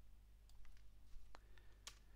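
A few faint computer mouse clicks, the last one the sharpest, over a low steady electrical hum.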